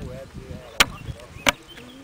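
Two sharp, loud clicks or knocks, about two-thirds of a second apart.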